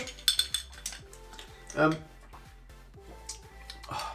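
Ice cubes clinking against a highball glass as a straw stirs a long drink: a quick run of clinks in the first half second, then a few scattered fainter ones, over quiet background music.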